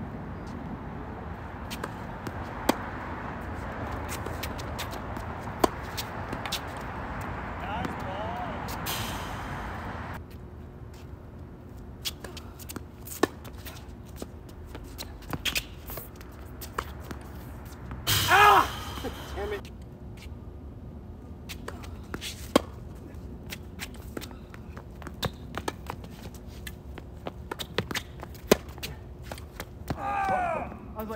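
Tennis rally on a hard court: sharp pops of rackets striking the ball and the ball bouncing, a second or two apart. A steady rushing background noise stops suddenly about ten seconds in, and a player gives a short loud shout a little past halfway.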